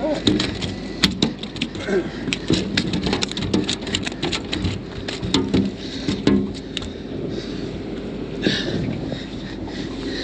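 Irregular sharp clicks and knocks of fishing line and gear being handled on a boat deck, thinning out after about seven seconds, over a low steady hum.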